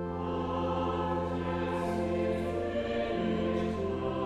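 Church choir singing in several parts, a new phrase starting right after a brief breath, with long held chords and soft 's' sounds of the words.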